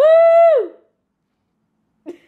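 A young child's voice singing one long, high note held steady, which slides down and stops within the first second; the rest is silence.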